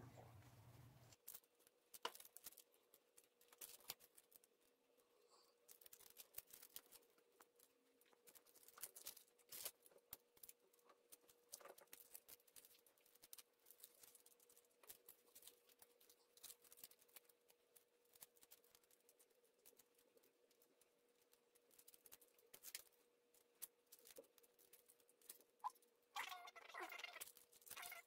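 Near silence with faint scattered clicks and crinkles of small plastic-foil instant-noodle seasoning sachets being torn open and squeezed out by hand, over a faint steady hum.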